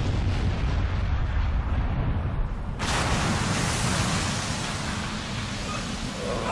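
Dramatised volcanic-eruption sound effect: a dense, sustained low rumble of explosions, with a second surge of hissing noise about three seconds in, easing off near the end.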